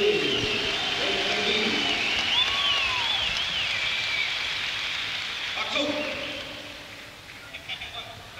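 Audience recording in a large concert hall: high wavering, sliding pitches and voices over a haze of crowd noise, with a lower voice-like sound briefly near six seconds, all trailing off near the end.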